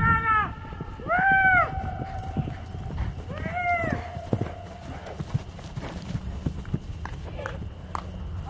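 Horses galloping on turf toward the listener, their hoofbeats coming as scattered thuds that thin out as they slow. Over them come three high calls that rise and then fall in pitch, the loudest about a second in.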